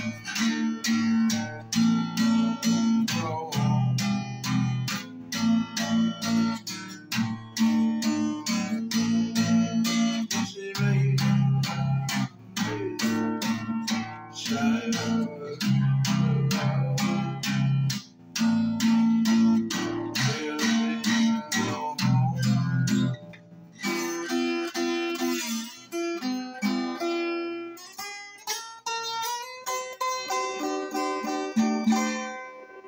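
Acoustic guitar played in a steady rhythm of strummed and picked chords over low notes. About 23 seconds in the low notes drop out and the playing moves up to higher notes.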